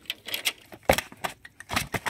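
A freshly landed rohu fish thrashing and slapping against stony, pebbly ground as it is laid down, with loose pebbles rattling; a heavy thud about a second in and another cluster of knocks near the end.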